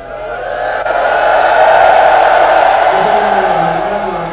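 Many voices of a gathered crowd raising a loud collective cry together, swelling up over about the first second and holding.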